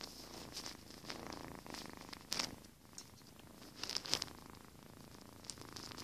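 A cat purring close to the microphone, a steady low pulsing hum, with a few short rustles and knocks of handling about two and four seconds in.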